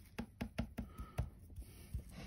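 A sponge applicator stippling rust-effect paint onto a metal plate: a run of light, irregular taps, several a second.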